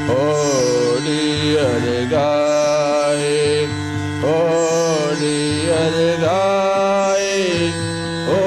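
A man singing a devotional song in long, sliding held notes over steady instrumental accompaniment.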